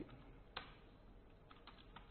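Faint computer keyboard keystrokes: one sharp key press about half a second in, then a few quick, lighter taps near the end.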